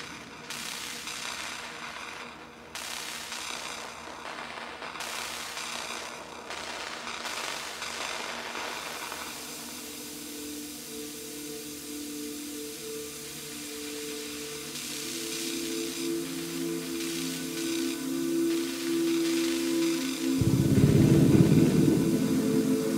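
Modular synthesizer music: swells of hissing, pulsing noise for the first several seconds, then a few steady droning tones that waver in level. A loud, deep noisy burst comes in near the end.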